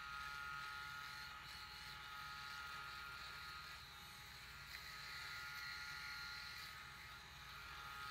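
A Phisco rotary electric shaver with three rotary heads runs as a quiet, steady whine while it is moved over a foam-lathered face and neck.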